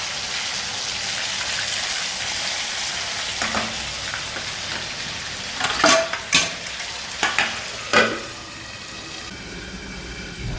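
Chicken pieces frying in hot oil in a kadai, a steady sizzle as they are stirred with a steel spoon. In the second half come a few sharp clinks and knocks of the metal spoon and utensils, and the sizzle is fainter near the end.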